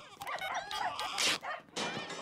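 A dog whimpering and yelping in a run of short, pitched cries, with a sharp noisy burst a little past the middle.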